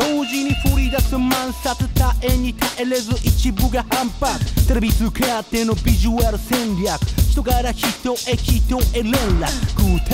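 Mid-1990s Japanese hip hop track: a rapper delivering Japanese verses over a drum beat with deep bass hits.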